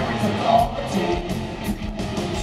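Live hard rock band playing through an arena PA: electric guitars over drums, with a steady run of cymbal hits several times a second.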